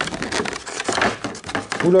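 Clear plastic blister insert of a trading-card box being gripped and flexed by hand, giving a dense run of crinkles and crackles as it is worked at to free a false-bottom tray.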